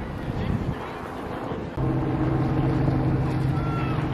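Wind and outdoor noise on the microphone; a little under two seconds in, a steady low boat-engine drone starts suddenly and holds an even pitch.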